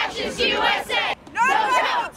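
Crowd of protesters shouting a chant together, with a short break a little past a second in before the next loud shouted phrase.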